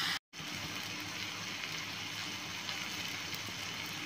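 Marinated chicken breast sizzling steadily on a hot ridged cast-iron grill pan over low heat. The sound cuts out for a moment just after the start.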